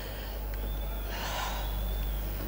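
A man draws one short breath close to a microphone, about halfway through, over a steady low hum.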